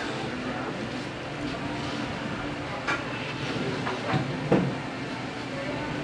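Steady background room noise of a restaurant, with faint distant voices and a single short click about three seconds in.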